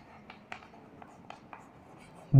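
Chalk writing on a chalkboard: a series of faint short taps and scrapes as the letters are stroked on.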